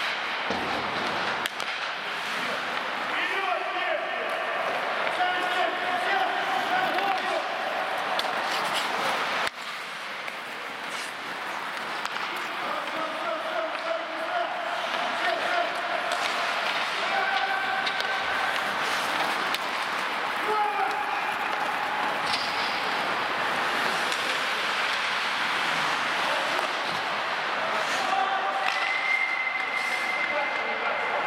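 Ice hockey in play: skates scraping across the ice, with sharp clacks of sticks and puck and players shouting to each other at intervals.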